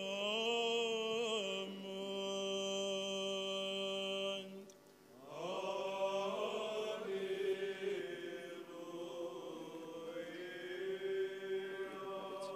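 Orthodox church chant: voices sing slow, melismatic phrases with long held notes, a short break about five seconds in, then a new phrase.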